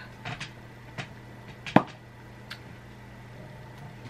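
A few light clicks and knocks from small objects being handled, with one sharp knock a little under two seconds in, over a steady low hum.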